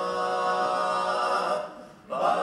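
Male barbershop quartet singing a cappella, holding one sustained chord that fades away about a second and a half in.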